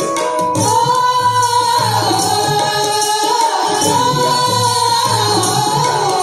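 A group of women singing a song together in unison, accompanied by a hand drum keeping a steady beat and small jingling percussion.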